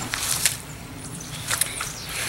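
Handling noise: a few short rustles and light clicks over a steady background hiss, bunched near the start and again about one and a half seconds in.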